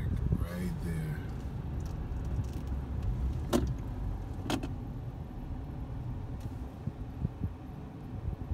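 Car cabin at low speed: a steady low engine and road rumble as the car rolls through a stop, with a man's voice briefly at the start. Two sharp clicks come about a second apart near the middle.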